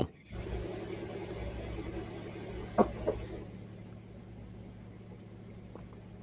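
Steady low background hum of a room picked up by an open microphone, easing off a little after the middle, with one short click about three seconds in.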